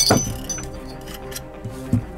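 A sharp metallic clink at the very start as small steel pistol parts, a coiled recoil spring and the striker, spill loose onto a padded mat while the pistol is being taken apart, with a fainter tap near the end. Background music plays throughout.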